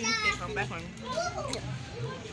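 A young girl's voice making short, indistinct utterances, with no clear words.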